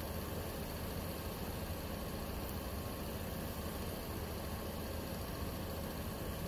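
Steady low hum and hiss of an idling vehicle engine.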